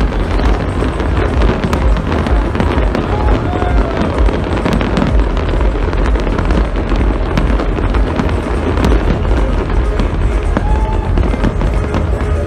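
Fireworks display with many shells and crackling stars going off at once, making a dense, continuous crackle of small reports over a deep rumble.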